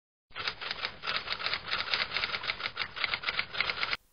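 A rapid, even run of sharp clicks, several a second like typing, starting a moment in and cutting off suddenly.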